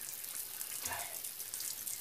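Shower water running steadily, spray falling onto a bather and into a bathtub.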